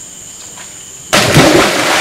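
A person jumping backward off a log lands in a pool with a sudden loud splash about a second in, the water still churning afterwards. Before it, a steady high insect buzz.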